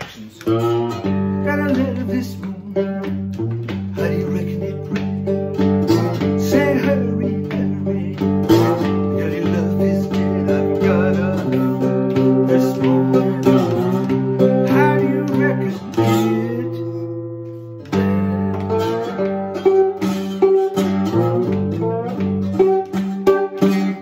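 Cigar box guitar played bottleneck style with a metal slide, a blues riff with notes sliding into pitch. The playing breaks off briefly about two-thirds of the way through, then starts again.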